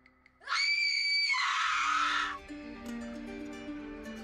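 A loud, shrill scream starts about half a second in, rising in pitch and then holding. It turns harsh and ragged and cuts off after about two seconds. Soft plucked music follows.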